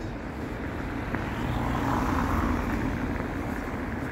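A vehicle passing close by: a noisy rush that swells to its loudest about halfway through and then fades.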